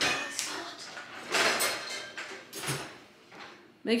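Dishwasher lower rack being rolled out and rummaged through, with plates and dishes rattling and clinking against each other in a few separate spells.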